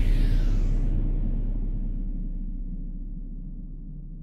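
Logo-intro sound effect: the tail of a deep bass impact, a low rumble that slowly fades away, with a whoosh dying out in the first second.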